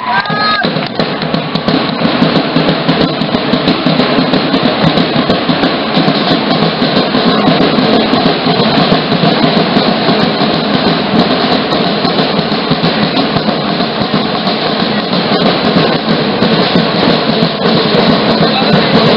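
A drum group of carried bass and snare-style drums playing a loud, fast, continuous beat for a dance.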